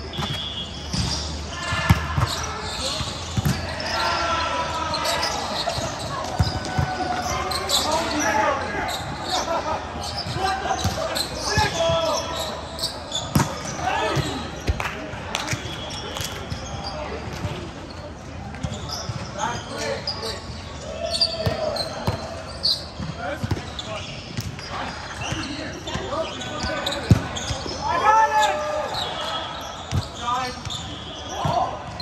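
Volleyball game in a large indoor hall: players' voices calling and chatting, with a few sharp thumps of the ball being hit or striking the court.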